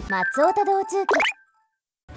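Short cartoon-style eyecatch jingle: a high-pitched female voice calls out the channel name in a sing-song over a brief musical sting, lasting a little over a second, then cuts off to silence.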